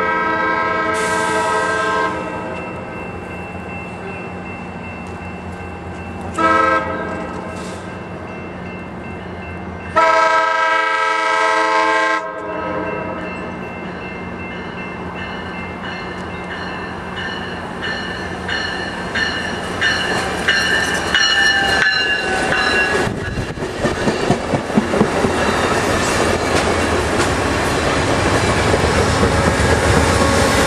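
Amtrak bilevel cab car's horn sounding a long blast, a short blast, then another long blast as the train approaches. The train then rolls past with rising wheel-on-rail rumble and clicking over the joints, loudest near the end as the GE P42 locomotive pushing at the rear goes by.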